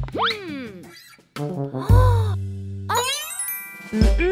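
Children's cartoon background music with comic sound effects: a quick rising pitch glide right at the start, a brief drop to near silence just after a second in, and a cluster of sliding pitched tones near the end.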